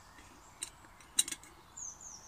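Titanium camping pot lid clinking against the pot rim as it is lifted by its wire loop with a stick and set back down: a few light metallic clinks, the loudest just past the middle.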